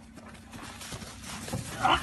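Hurried footsteps on dry grass with rustling movement noise, growing louder, then a man shouting "Hey, hey" near the end.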